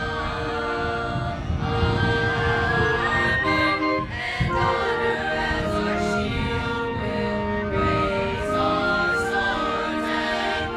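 Choir singing a school alma mater with concert band accompaniment, in slow, long-held notes in harmony.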